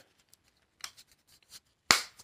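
A few faint clicks from handling a small manicure-set case, then a sharp snap near the end as its magnetic latch is pushed and clicks.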